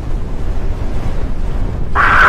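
Loud, steady low rumbling noise of a video intro's sound effect, without speech.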